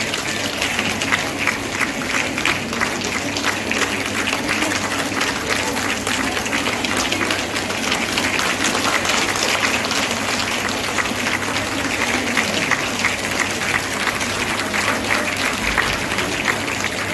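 Audience applauding steadily, many hands clapping together.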